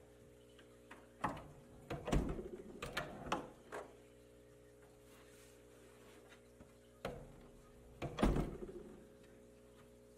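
Wooden bookshelf door being swung shut, with a series of knocks and a deep thud as its ball catch pulls it closed. Another click and heavy thud follow about seven to eight seconds in. A steady low hum runs underneath.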